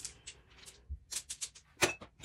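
Small plastic dice clicking against each other as they are handled and put away: a quick run of light clicks, thickest in the second half.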